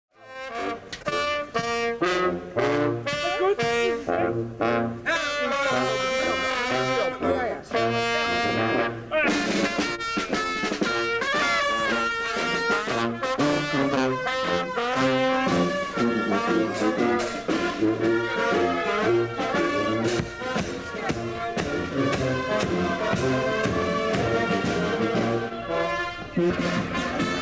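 Carnival brass band playing a lively tune: a sousaphone gives the bass notes under trombones and trumpets. The first several seconds are short, punchy chords, and the playing then turns into a fuller, continuous melody.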